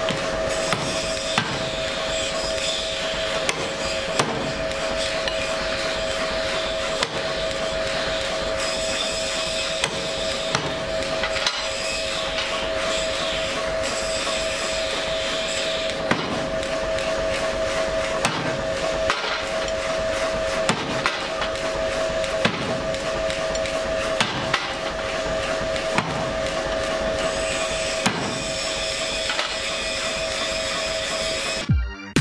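Hammer blows forging a red-hot steel bar on an anvil: sharp, irregularly spaced strikes about once a second, over a steady droning tone.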